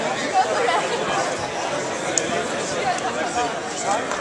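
Crowd of spectators chattering, many overlapping voices in a steady babble with no single clear speaker.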